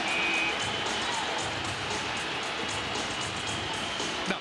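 Ice hockey arena crowd noise, with music playing over the arena's public-address system during a stoppage in play.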